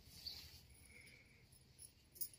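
Near silence: room tone, with only a faint high hiss.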